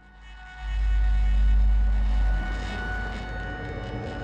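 A deep low rumble swells in about half a second in, holds strongest for about two seconds, then eases to a steadier, lower rumble with a faint steady high hum over it.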